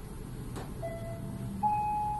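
Elevator car travelling with a low hum that dies away as it comes to a stop. A faint click comes about half a second in, then a two-note electronic arrival chime, the second note higher and louder.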